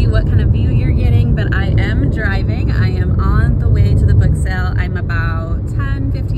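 Steady low rumble of a car driving, heard inside the cabin, with a woman talking over it.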